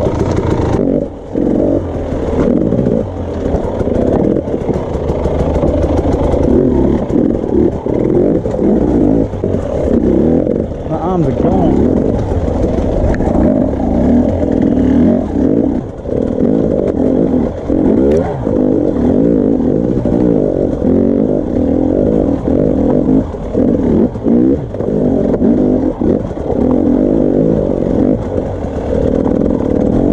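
Dirt bike engine running hard and revving up and down over and over as the bike is ridden over rough rocky ground, the throttle coming on and off every second or two.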